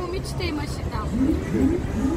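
Short bursts of people talking, with a steady low rumble underneath.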